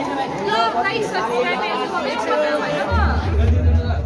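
Many students chattering at once in a crowded corridor, overlapping voices with no single speaker standing out. Near the end a low rumble comes in over the voices.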